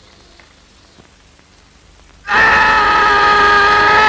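A young man's long, loud shout held on one pitch, starting suddenly about two seconds in and falling off at the end.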